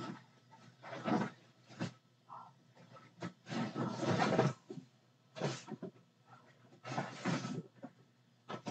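Dogs barking at trespassers in about five separate bursts, the longest in the middle.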